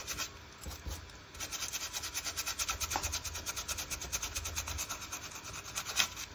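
Small ink blending brush rubbing ink through a stencil onto canvas in quick, light, rhythmic strokes, about eight a second, easing off for about a second near the start.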